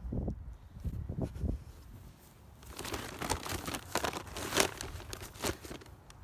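A large feed sack being handled and turned, its sides crinkling and rustling in a dense crackle for the second half; a few low bumps come before that.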